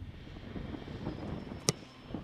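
A football kicked once: a single sharp thump near the end, over steady outdoor background noise.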